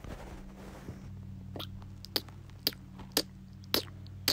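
A faint steady low hum with five short sharp clicks about half a second apart, starting about a second and a half in.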